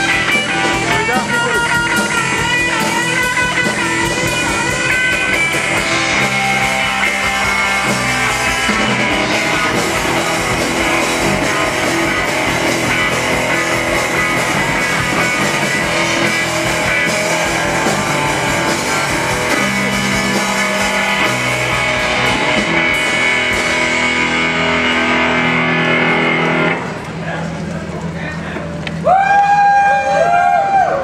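Live rock band playing: electric guitar, bass guitar and drum kit. Near the end the band thins out, and a loud held note that bends in pitch comes in.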